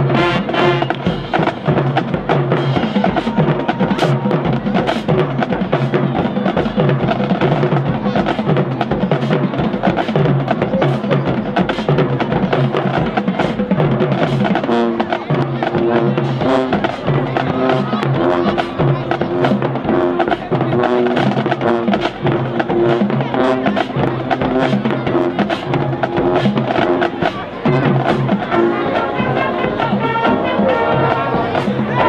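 High school marching band playing: brass chords over a steady beat from the drum line.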